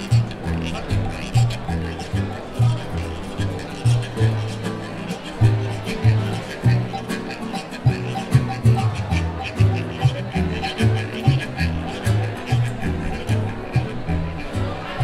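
Acoustic guitars of a carnival chirigota playing a rhythmic instrumental passage, with a repeating bass line pulsing about twice a second under strummed chords.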